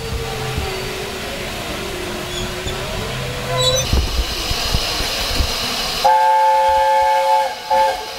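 Steam locomotive LNER A4 Pacific 60009 passing with its coaches rumbling by and steam hissing. About six seconds in, its three-chime whistle sounds one long blast of about a second and a half, then gives a short toot near the end.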